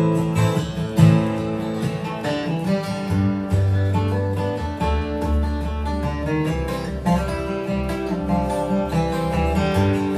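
Bluegrass band playing an instrumental passage: acoustic guitars strumming and picking over upright bass notes.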